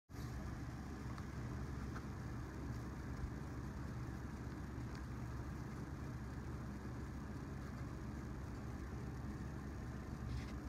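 A steady, quiet low hum with a faint even hiss, unchanging throughout: room background noise.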